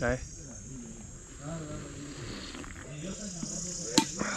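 Insects chirring in a steady, high-pitched chorus, with quiet men's voices talking in the background from about a second and a half in and a sharp click near the end.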